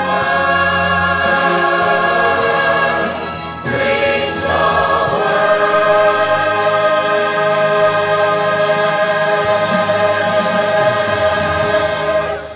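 Mixed church choir singing in harmony. After a brief break in the phrase a little past three seconds, the choir holds one long chord that cuts off near the end, the close of the anthem.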